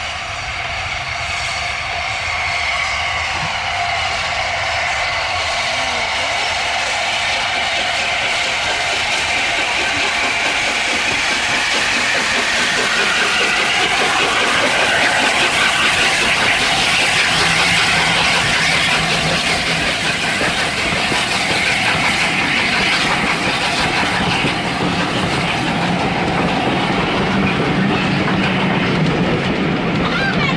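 LNER A4 Pacific steam locomotive Sir Nigel Gresley drawing near and passing close by, growing steadily louder. It is followed by its train of coaches rolling past with a continuous clatter of wheels on the rails.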